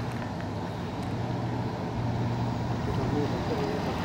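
Outdoor background noise with a low steady hum that swells and fades, and faint talk from people nearby, a few words audible about three seconds in.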